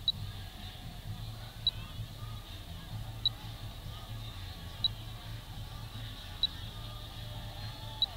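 Short, high electronic beep repeating evenly about every second and a half, over a steady low rumble.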